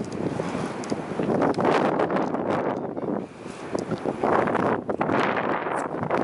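Gusty wind buffeting the microphone: an uneven rushing noise that swells and falls, easing briefly a little past three seconds in.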